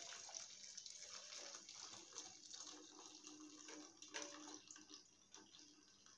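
Faint trickle of liquid draining through a plastic strainer into a steel pot, fading away toward the end, with a few small clicks.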